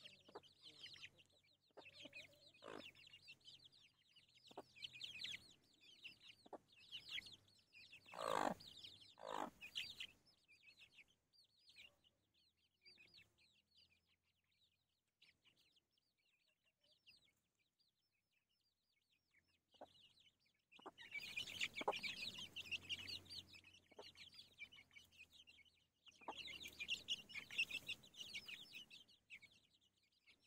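A brood of young chicks peeping constantly with quick, high cheeps, and a mother hen with them giving a couple of louder, lower calls about eight and nine seconds in. The peeping thickens and grows louder in two stretches in the second half. The whole is faint.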